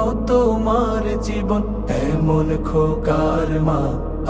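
Background music: a Bengali Islamic lament song, a voice singing a drawn-out line over a steady low drone that shifts pitch about halfway through.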